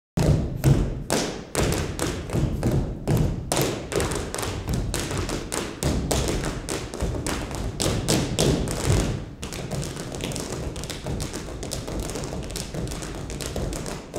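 Tap shoes striking a hard floor in a quick, uneven rhythm typical of rhythm tap. About nine seconds in, the taps become faster and a little quieter.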